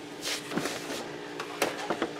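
Plastic food dehydrator being opened: the lid and trays are handled with a few soft knocks and scrapes, over a faint steady hum.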